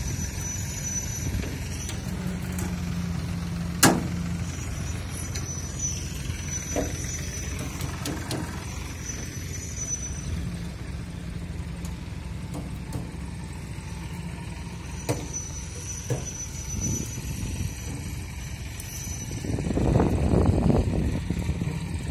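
An engine running steadily with a low hum, with one sharp knock about four seconds in and a swell of louder noise near the end.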